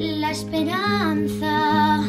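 Classical guitar playing under a high sung melody whose pitch slides up and down, with no clear words.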